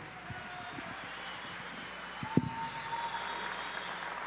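Steady hiss-like background noise of a large hall, with a faint steady tone coming in about two seconds in and a single soft thump just after it.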